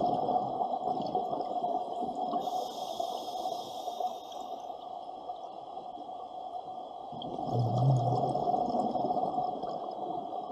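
Scuba diver's regulator exhaling underwater: a rush of bubbles at the start and again about seven and a half seconds in, with steady underwater noise between breaths.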